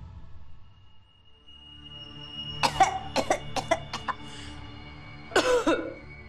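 A woman coughing over a held note of background music: a quick run of short coughs about halfway through, then a longer fit near the end.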